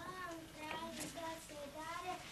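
A child singing a simple melody in short held notes.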